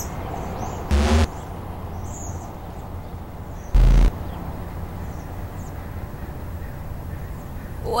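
Steady background hiss with a low hum and faint high chirps, broken by two short loud hits, one about a second in and one near four seconds. The song's music and singing start at the very end.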